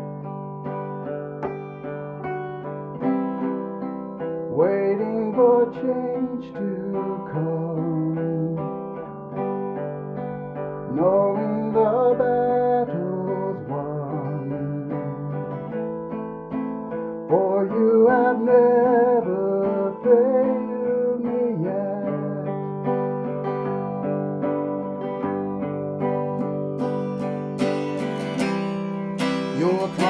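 Acoustic guitar accompanying voices singing a slow worship song. The singing pauses for a few seconds near the end, leaving the guitar alone, then comes back in.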